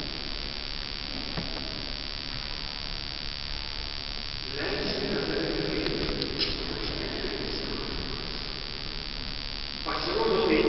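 Reverberant room tone of a large church, then a preacher's voice carrying through the hall from about halfway in, echoing in the nave.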